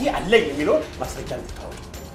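A man speaking forcefully in Amharic for about the first second, over a rapid ticking and clicking in the background.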